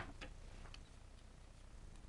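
Near silence with a few faint small clicks from objects being handled on a tabletop, the first one sharper.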